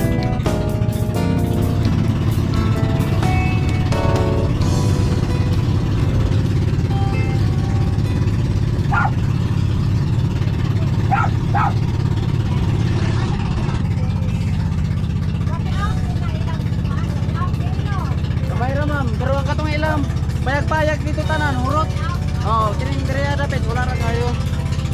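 Engine of a motorized outrigger boat (bangka) running at a steady drone while under way. Background music plays over the first few seconds, and voices talk over the engine in the second half.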